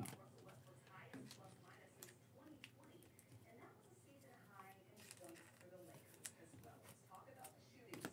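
Near silence: quiet room tone with faint background speech and a few soft, scattered clicks.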